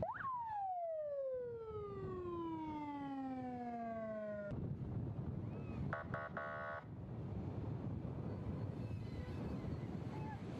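Vehicle siren on a military police armoured vehicle giving one quick rising whoop that falls slowly in pitch for about four and a half seconds and cuts off suddenly. About six seconds in comes a short buzzing horn blast of under a second, over the steady rumble of the moving vehicle.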